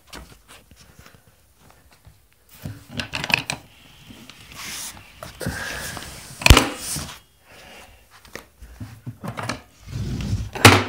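Packaging being handled as a box is opened: rustling and rubbing of bubble wrap and cardboard in scattered bursts, with one sharp knock about six and a half seconds in, the loudest sound, and a few light clicks near the end.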